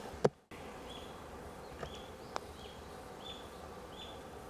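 Quiet outdoor ambience: a steady faint background hiss with short high chirps repeating roughly once a second, and a single sharp click about two and a half seconds in. It opens with a brief sharp sound that cuts off into a moment of dead silence.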